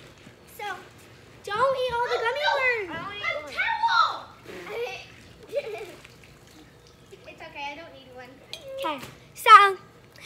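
Children's voices calling out and chattering over one another, the words not clear, with a loud high-pitched cry near the end.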